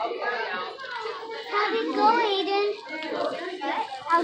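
Overlapping chatter of children's and adults' voices in a busy room, with a high child's voice loudest about two seconds in.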